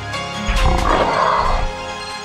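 Background music with a loud animal roar sound effect laid over it, starting about half a second in and lasting about a second.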